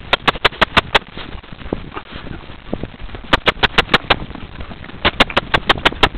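Sharp, rapid clicks in three quick bursts of about half a dozen each, over a low rumble of movement and wind, while a horse is being ridden across grass.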